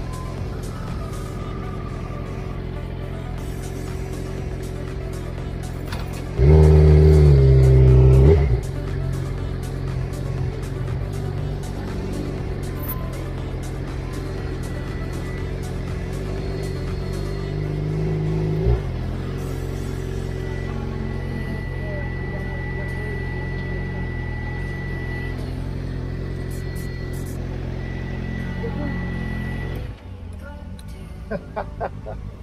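Motorcycle engine running steadily under way, with a sudden louder stretch of about two seconds at around six seconds in, and a smaller swell that cuts off near two-thirds through. Music plays along with it.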